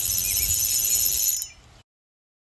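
Spinning reel's drag buzzing as line pays out, a high, fast rattling whine that fades out about one and a half seconds in.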